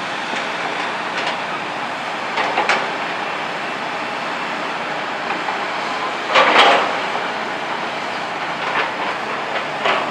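Freight train tank cars rolling past: a steady rush of wheel and rail noise with scattered clicks of wheels over rail joints, and a louder burst about six and a half seconds in.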